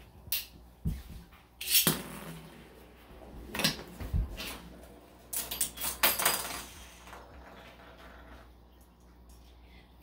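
A Beyblade spinning top and its launcher being test-launched on a laminate floor: a series of sharp plastic clicks and clatters. The loudest comes about two seconds in, and another cluster about five to six seconds in.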